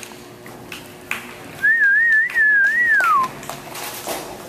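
A person whistling: one wavering note, lasting about a second and a half, that ends in a downward slide.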